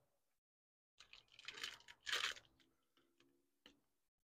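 Block of cheddar cheese rubbed down a stainless steel box grater over a metal bowl: a few rasping strokes starting about a second in, the loudest two close together, followed by some lighter scrapes and ticks.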